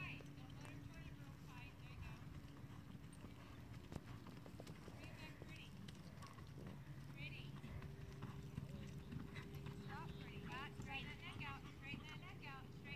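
Faint hoofbeats of a horse galloping and turning on soft arena dirt, over a steady low hum.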